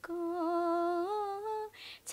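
A young woman singing unaccompanied, holding one long note that steps up in pitch about a second in, then a quick breath near the end.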